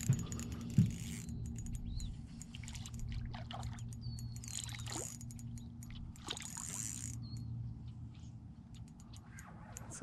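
A hooked panfish splashing at the water's surface as it is reeled in toward the boat, in two short surges about midway, over a steady low hum. There are scattered light ticks and a few short high chirps.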